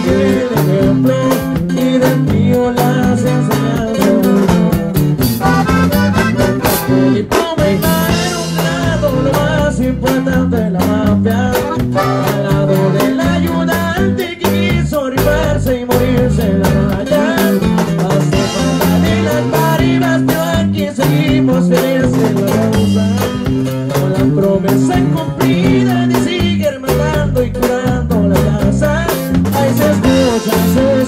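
Live sierreño band music: plucked and strummed guitars play over a bass line that steps from note to note, with no lead vocal transcribed.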